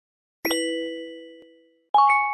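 Two chime sound effects of an animated like-and-subscribe button. A bright ding about half a second in rings and fades for about a second and a half, then a second, differently pitched ding starts just before the end.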